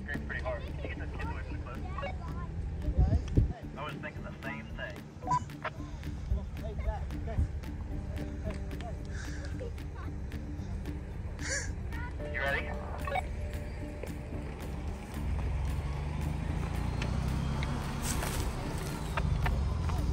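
Indistinct voices of a small group talking at a distance over a steady low rumble, with a few louder moments.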